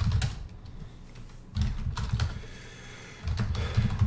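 Computer keyboard typing in three short bursts of keystrokes, with pauses of about a second between them.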